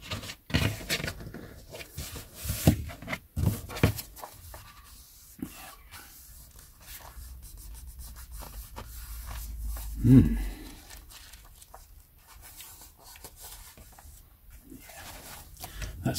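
A vintage paperback book being handled and pressed after its loose spine has been glued back on, its card cover and pages rubbing and rustling, with a few soft taps against the table in the first few seconds. There is a brief low sound about ten seconds in.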